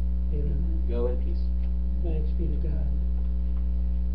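Steady electrical mains hum, a low buzz with a ladder of overtones, loud throughout, with faint, indistinct talk over it in the first three seconds.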